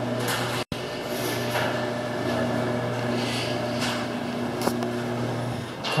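Garage door opener motor running as it raises a metal overhead garage door: a steady hum that stops shortly before the end. The sound cuts out for an instant under a second in.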